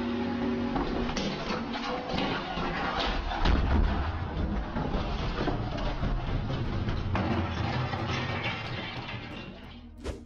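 A motor yacht falling from a crane's slings onto a barge deck: a heavy crash with a deep thud about three and a half seconds in, over steady noise. Brief background music fades out about a second in.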